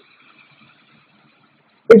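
Near silence: a pause in speech with only a faint steady hiss, until a man's voice resumes near the end.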